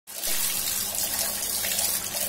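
Water running steadily from an open wall tap, pouring onto a stone floor and splashing over a toddler's hands held in the stream.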